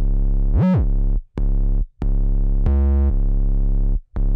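A trap 808 bass line playing alone: long, deep sustained notes with a quick swoop up and back down in pitch under a second in. Short silent gaps break the notes, because the 808 is truncated so that it pauses where the snare hits.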